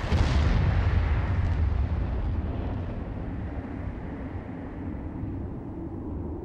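A deep explosion boom lands right after a brief rushing swell. It then dies away over a few seconds into a low, steady rumble, with a faint held tone coming in near the end.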